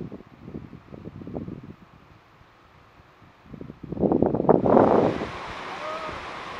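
Wind buffeting the microphone in irregular gusts. It dies down briefly around the middle, then a strong gust comes about four seconds in, followed by a steadier outdoor hiss.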